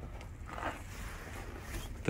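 Faint outdoor background noise with a low, steady rumble and no distinct event.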